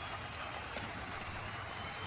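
Steady background noise, an even rush with no distinct events.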